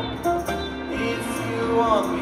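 Live band playing raga rock: a sitar plays gliding, bending phrases over a steady drone, in an instrumental gap between sung lines.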